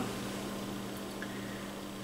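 A steady low hum of several fixed tones with a faint even hiss over it, unchanging throughout.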